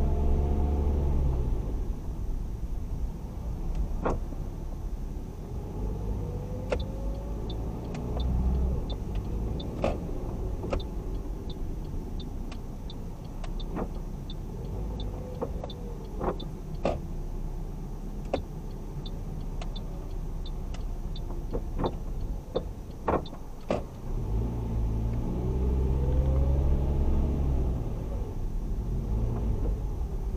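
Heard from inside a car: the engine and tyres as it climbs slowly up and around the ramps of a multi-storey carpark, working harder on the ramps near the start and end. A light ticking at about two a second runs through the middle, and there are several short sharp knocks.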